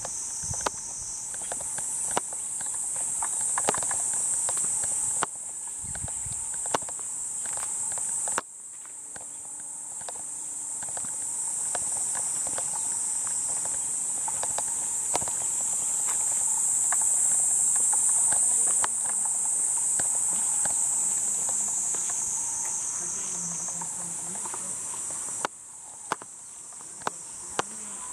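A continuous high-pitched shrilling chorus of summer cicadas, its loudness jumping up and down abruptly several times, with a few scattered sharp clicks.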